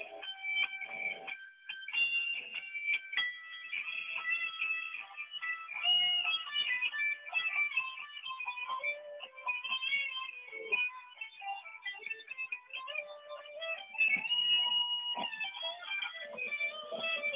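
Electric guitar played as a continuous melodic line of single notes and short phrases, some notes held for a second or so. It is heard through video-call audio that cuts off the highest tones.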